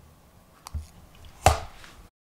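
A faint click about two-thirds of a second in, then a single sharp knock near the end.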